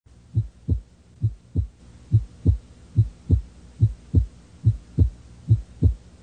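A heartbeat: pairs of low lub-dub thumps repeating steadily, about 70 beats a minute.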